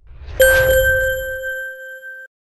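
TV station logo sting: a low rumbling whoosh, then about half a second in a single bright bell-like ding that rings on and slowly fades.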